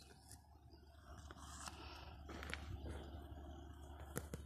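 Faint outdoor ambience: a few short, high bird chirps over soft rustling that swells about a second in.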